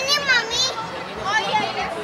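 A young child's high-pitched voice making two drawn-out, wavering calls, without clear words.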